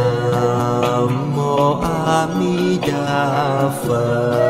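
Devotional chant sung over sustained instrumental music, a slow melodic vocal line with a steady low drone beneath.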